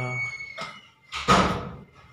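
A single dull thump a little over a second in, the loudest sound here, following the end of a drawn-out spoken word.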